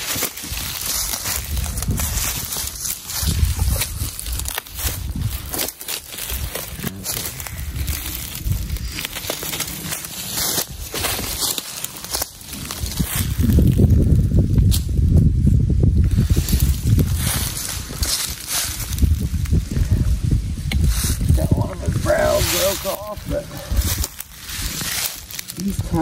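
Dry leaf litter rustling and crackling as a dead whitetail buck is handled and shifted on the ground, with a low rumble on the microphone through the middle and brief voices near the end.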